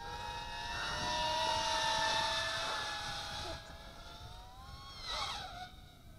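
Eachine Racer 180 tilt-rotor drone in flight, its four 2205 brushless motors and propellers whining at several steady pitches that drift slightly. The whine is loudest in the first three seconds, then fades, and near the end a brief whine rises and falls as the drone turns fast.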